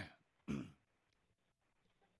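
A man briefly clears his throat about half a second in, just after the tail of a spoken word; the rest is near silence.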